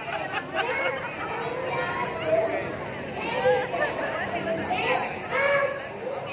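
Young children's voices speaking their lines into stage microphones, several voices overlapping, amplified through a PA.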